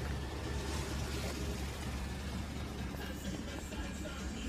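5th-generation Camaro SS's 6.2-litre V8 idling, a steady low rumble.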